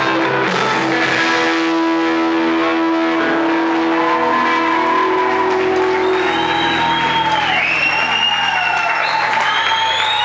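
A live rock band holding out its final chord: electric guitars and bass ring on in long, steady notes that slowly die away. About halfway through, high gliding tones come in over it.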